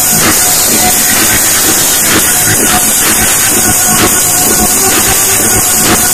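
Loud trance dance music from a club sound system, with a steady beat about twice a second under a dense, noisy wash from the overloaded recording.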